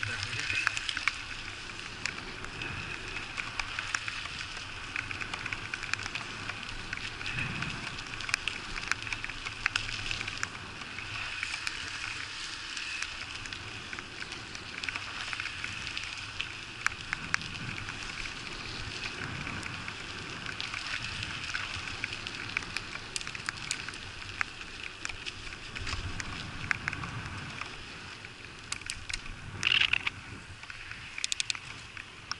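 Bicycle tyres hissing on wet asphalt, with many small clicks and rattles from the bike running over the rough, broken road surface.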